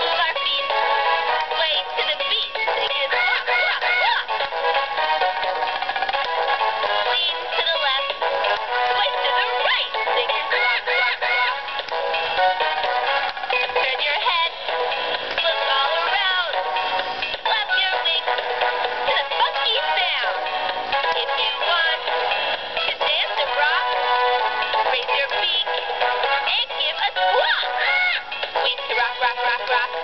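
Hasbro FurReal Friends Squawkers McCaw animatronic parrot toy playing its own built-in song: a thin, tinny tune with no bass, with the toy's synthetic parrot voice singing along in warbling squawks.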